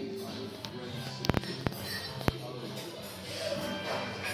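Bar-room ambience: background music and the murmur of voices, with a few sharp clinks of glass, a cluster about a second in and two more shortly after.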